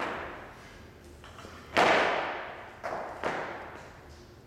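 Weights in a weightlifting gym: four heavy thuds, one right at the start, the loudest a little under two seconds in, and two more close together near the end, each ringing out in the hall's echo.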